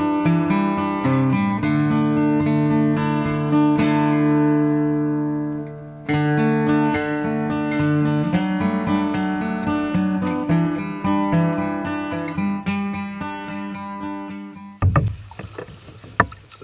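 Background music of plucked acoustic guitar. The music fades out about five seconds in and starts up again a second later. About a second before the end it stops and gives way to a couple of sharp knocks.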